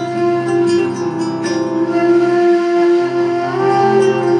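Instrumental passage of a live Tunisian folk song: a flute holds a long note that bends near the end, over keyboard, acoustic guitar and light drum strokes.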